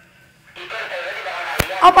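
Hushed voices after a brief near-silence, with one sharp click about one and a half seconds in, then a voice asking "apaan" ("what is it?").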